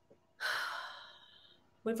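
A woman's long audible breath, a sigh or gasp that starts sharply and fades away over about a second, followed near the end by the start of speech.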